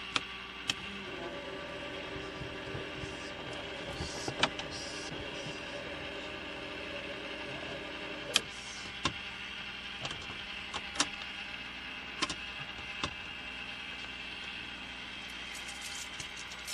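Steady electrical hum with a few steady tones in the cabin of a Piper PA-32 Cherokee Six with its battery switched on and the engine not yet running, broken by a handful of short sharp clicks.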